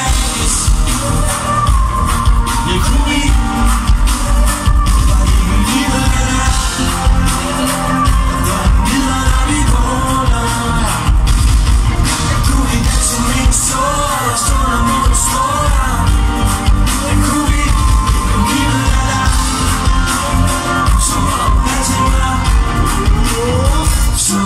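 Loud live pop music over a festival sound system, with a heavy bass beat and voices singing.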